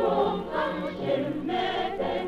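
Mixed choir singing with a male soloist, in sustained, shifting chords, on an old recording with nothing above about 4 kHz.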